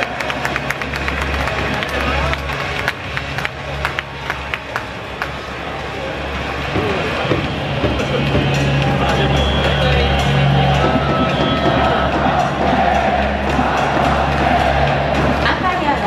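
Stadium PA music with a pulsing bass beat, over the murmur of a ballpark crowd.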